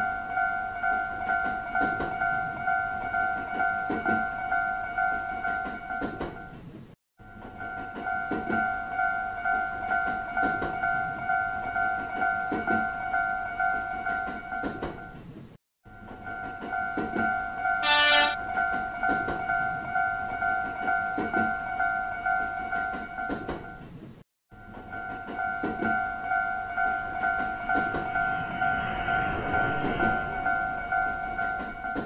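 Japanese railroad crossing alarm bell ringing in a fast, steady, regular ding, cut by three brief silent gaps. A short, loud horn toot sounds partway through, and a rising rush of an approaching train builds near the end.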